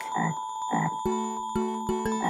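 Frog croaking, two short croaks in the first second, then music comes in about halfway.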